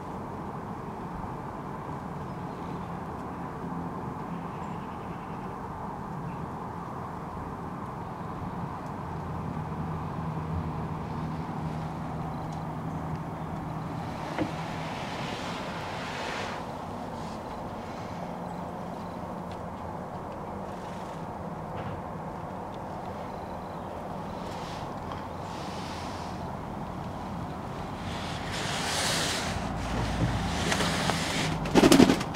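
Steady low background rumble, with a few short bursts of louder noise about halfway through and again near the end.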